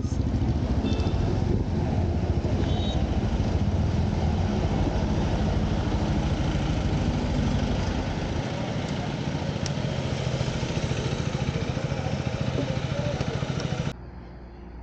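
Motorcycle engine running at low speed as the bike rolls up to a fuel pump, then idling steadily while it waits to be refuelled; the sound cuts off abruptly at the end.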